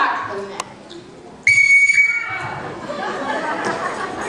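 A brief vocal shout, then a single short whistle blast about a second and a half in: one steady high tone held for about half a second. After it comes a murmur of audience chatter in a hall.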